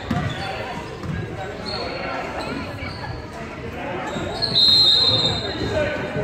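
Basketball dribbling and shoe thuds on a hardwood gym floor, with voices in the echoing hall. About four and a half seconds in, a referee's whistle blows one steady shrill blast for about a second, and play stops.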